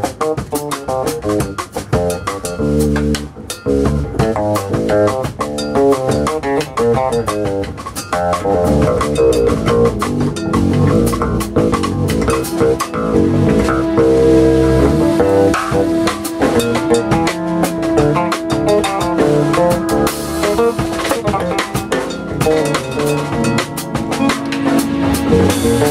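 Live small-group jazz: drum kit and fingered electric bass driving a busy groove, with a melody instrument holding one long note through the middle of the passage.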